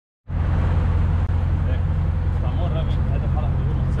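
BMW M3's V8 idling steadily through a Valvetronic Designs valved full exhaust system, with a deep, even exhaust drone.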